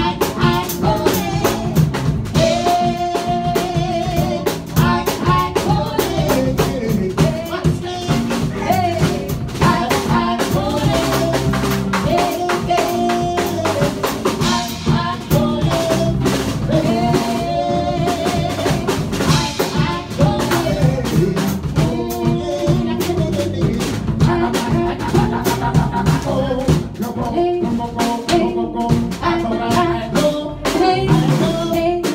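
Live band playing: a drum kit keeps a beat with rimshots under a held, bending melody line, with singing.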